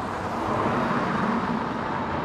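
Road traffic noise from cars on the street: a steady rush that swells slightly about half a second in.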